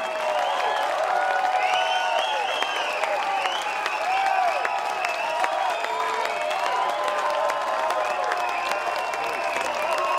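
Concert audience applauding and cheering, with many voices whooping over the steady clapping.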